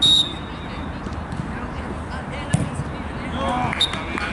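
A referee's whistle gives a short, sharp blast, signalling that the free kick may be taken, and a briefer blast follows near the end. A single sharp thump comes a little over two seconds in, and players shout just before the end.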